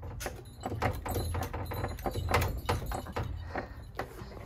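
A shop's glass door rattled and tugged at its metal handle, the strap of bells hanging from the handle jingling in a string of irregular knocks and jingles over a steady low hum.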